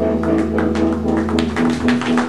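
Live rock band with electric guitars, bass and drums playing the closing bars of a song: held chords under a flurry of quick drum and cymbal hits, with the bass dropping out near the end.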